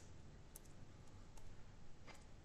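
A few faint clicks of a computer keyboard and mouse as a value is typed into a field, over low room hiss.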